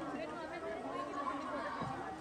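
Several people chatting at once: overlapping conversation among seated guests, no single voice standing out.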